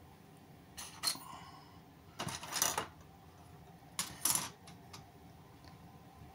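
Small toy parts being set down on a metal tabletop: light clicks and clatters about a second in, around two and a half seconds in, and again at about four seconds.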